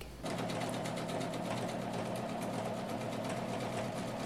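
Husqvarna Viking electronic sewing machine stitching fabric at a steady speed, a rapid even run of needle strokes starting a moment in.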